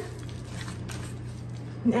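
Wooden spoon stirring a moist mix of chopped fruit, pecans and flaked coconut in a bowl, with faint soft scraping and squishing over a steady low hum.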